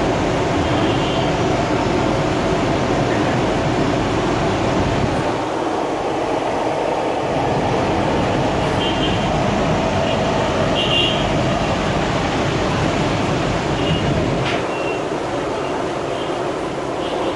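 Steady sizzling of patties deep-frying in a large karahi of oil, over a low steady rumble.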